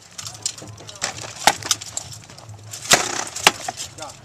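Rattan swords striking wooden shields and armour in SCA armoured sparring: a quick run of sharp knocks, the loudest about three seconds in.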